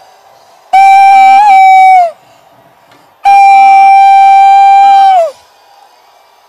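Two long, loud, high "woo" shouts, each held on one pitch for about one and a half to two seconds and falling off at the end, with crowd noise in the gaps between them.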